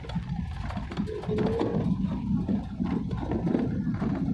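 Passenger train running, heard from inside the coach through an open window: a dense low rumble with frequent irregular knocks from the wheels and carriage.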